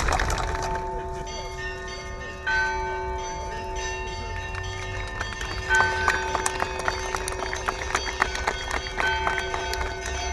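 Bells ringing: a few strokes about three seconds apart, each ringing on in several steady tones. Applause fades out just at the start.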